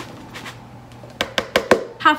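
Scooping and handling plastic kitchenware while measuring confectioner's sugar: a soft scraping at first, then four or five quick light knocks of the cup against the plastic bowl and tub in the second half.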